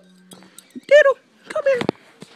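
Poodle puppy giving two short high-pitched cries, the first rising and falling about a second in, the second falling in pitch near the end.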